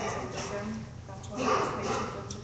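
Indistinct voices murmuring in a meeting room, growing louder briefly about one and a half seconds in.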